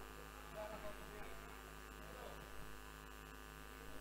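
Quiet, steady electrical mains hum and buzz from a live PA sound system, with faint voices in the background.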